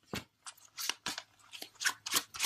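Tarot cards being handled: several short, crisp flicks and slides of card stock at uneven intervals.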